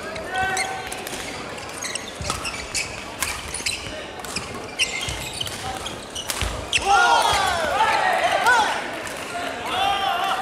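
Doubles badminton rally on an indoor court: sharp cracks of rackets striking the shuttlecock, with rubber-soled shoes squeaking on the wooden floor. The hall is echoey, and a cluster of louder squeaks comes about seven to nine seconds in.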